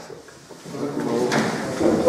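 Sheets of paper rustling and being shuffled on a table, opening with a light knock and growing louder from about half a second in, with voices murmuring.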